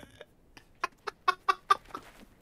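A man laughing hard in a quick run of short, breathy "ha" pulses, about five a second, starting about half a second in.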